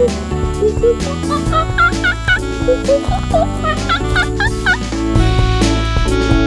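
Upbeat children's music with a steady beat, with runs of short, high monkey-like hoots rising and falling in pitch over it, thickest a few seconds in. A laugh comes near the end.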